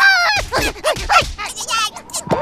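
A cartoon character's nonverbal voice: a quick run of short, squeaky yelps and cries sliding up and down in pitch, with a few low thuds underneath in the first second.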